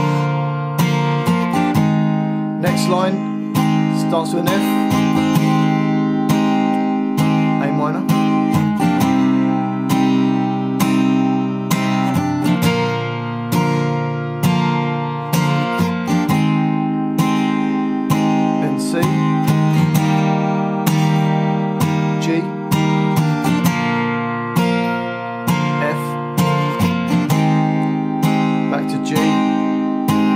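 Capoed Taylor steel-string acoustic guitar strummed in even strokes, about four to a bar, through F, A minor, C and G chord shapes, each chord held for a bar before changing.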